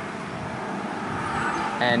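Steady road traffic noise, growing slightly louder, with faint voices in the background; a man's voice starts near the end.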